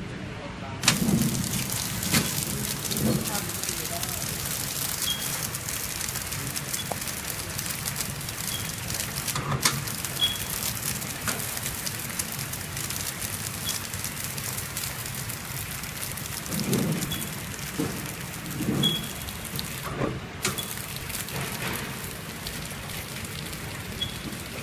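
Flow wrap packing machine switched on, starting abruptly about a second in and then running steadily: a dense, even mechanical rush from its conveyor and wrapping head, with scattered sharp ticks and faint short high chirps now and then.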